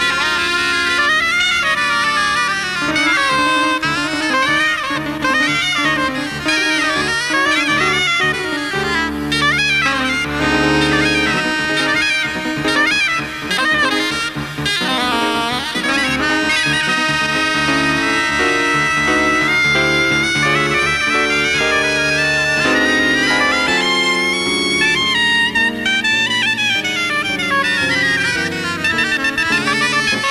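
Two soprano saxophones playing melody lines together, live, over sustained low accompaniment from the band.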